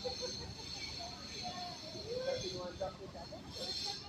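Background chatter of several people's voices, with a steady high-pitched buzz that comes in about half a second in, fades past the middle and returns near the end.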